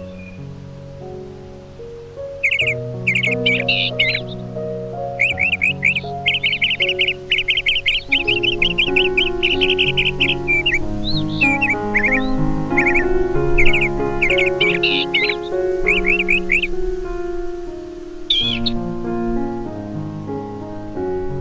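Soft piano music of slow, held notes, with birds singing over it: quick repeated chirps and trills from about two seconds in, fading out near the end.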